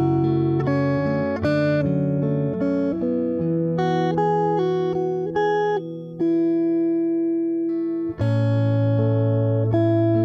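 Acoustic guitar played fingerstyle with a capo: a slow melody plucked over bass notes. About six seconds in, a chord is left ringing for roughly two seconds, then a brief gap and a new phrase with deep bass notes.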